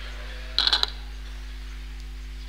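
A steady low hum with a brief cluster of four or five sharp clicks about half a second in.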